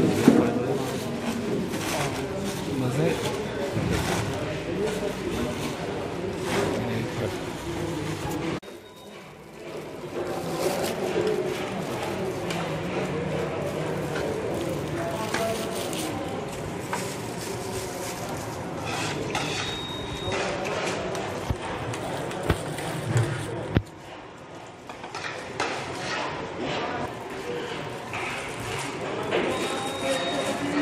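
Indistinct chatter of several people's voices, with scattered clicks and knocks. The sound drops out briefly about nine seconds in and again near 24 seconds.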